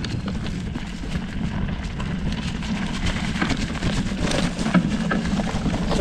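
Surly Krampus mountain bike rolling over a rocky, leaf-covered trail: wide knobby plus-size tyres crunching over loose stones and dry leaves, with frequent small clicks and knocks over a steady low rumble.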